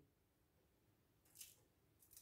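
Near silence, with one faint short tick about one and a half seconds in.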